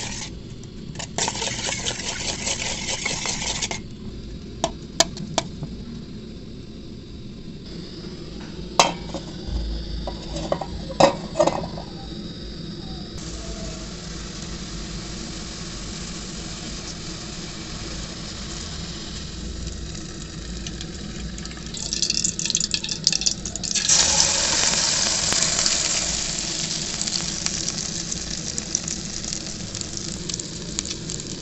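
A spoon stirs chopped vegetables and spices in a stainless steel bowl, with a few sharp metal clinks. About 22 seconds in, egg batter hits hot oil in an aluminium kadai and sizzles loudly, then settles into steady frying.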